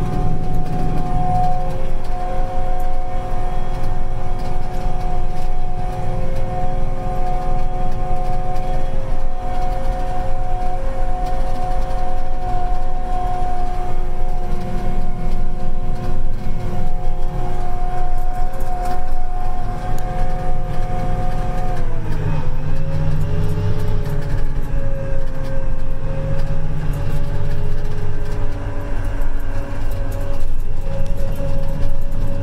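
Apache self-propelled crop sprayer running at wide-open throttle, heard from inside the cab: a steady engine drone under a high whine. About three-quarters of the way through, the whine drops in pitch and settles at a lower steady note.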